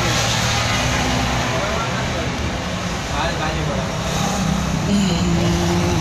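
Steady road traffic noise with a vehicle running nearby, and people talking in the background.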